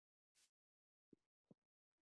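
Near silence: a pause between narrated sentences.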